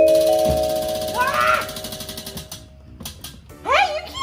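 A chime sound effect: bell-like mallet notes climbing in steps to a held, shimmering chord that fades away over about two and a half seconds. A brief voice sounds partway through, and voices come in near the end.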